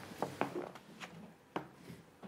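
A small gift box handled and opened on a table: a series of light, quiet clicks and taps.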